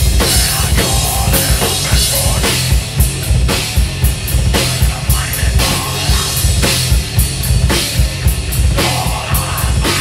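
Live heavy rock band playing loud, with the drum kit to the fore (kick drum, snare and cymbals hit in quick succession) under electric guitar.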